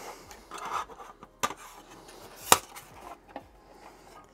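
Handling noise from a Neewer 660 LED studio light panel being turned round in the hands: soft rubbing, a few light clicks, and one sharp click about two and a half seconds in.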